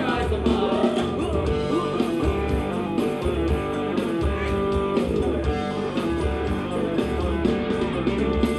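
A live band plays Thai ramwong dance music over a steady bass beat, about one beat a second.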